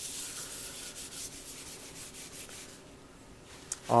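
Acetone-soaked paper towel scrubbed over an etched aluminum pedal enclosure, stripping off nail-polish resist and laser-printer toner: a dry, hissing rub that eases off about three seconds in.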